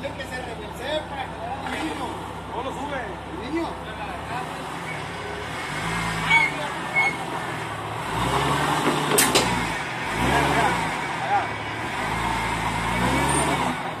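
Jeep Wrangler Rubicon engine revving in repeated rising and falling surges as the Jeep crawls over tree roots, its rear tyre hanging up on a root. A sharp click partway through.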